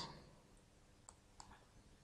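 Near silence with two faint, short clicks a fraction of a second apart, about a second in: a computer mouse being clicked.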